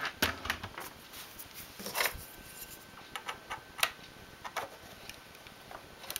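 Scattered light metallic clicks of knitting-machine needles being slid along the metal needle bed into working position, a dozen or so at uneven intervals, the loudest about two seconds in and just before four seconds.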